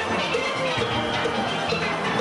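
Steel band playing: a large ensemble of steel pans ringing out quick repeated notes over drums and percussion.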